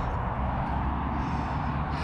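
Steady outdoor background rumble, mostly low in pitch, with no distinct events.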